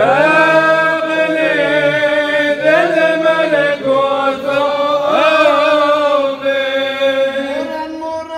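A man chanting a Syriac Orthodox liturgical hymn without accompaniment, in one long flowing phrase with ornamented turns of pitch. A new phrase begins right at the start, after a breath.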